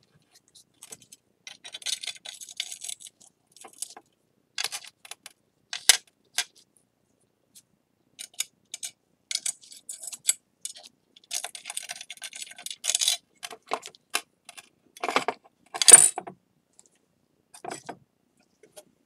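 Broken ceramic bowl pieces clinking and scraping against each other as the shards are fitted back into place: a scattered run of short clicks and gritty scrapes, with the loudest clink about sixteen seconds in.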